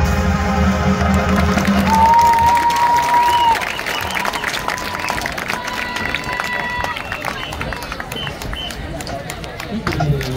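A high school marching band's closing chord, with brass and drums, holds and then stops about two seconds in. The crowd then applauds, cheers and shouts, and one long high cheer or whistle is held for over a second.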